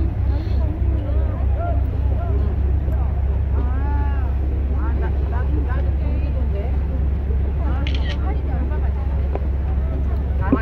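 Steady low rumble of a ferry under way, heard from its open deck, with voices of other passengers talking faintly over it.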